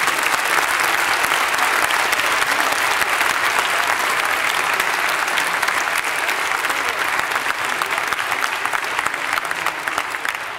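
A large audience applauding: dense, steady clapping that begins to thin slightly near the end.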